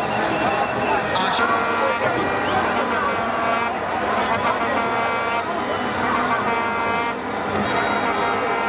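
Voices of a crowd with long, steady horn blasts sounding over them, several held for a second or two.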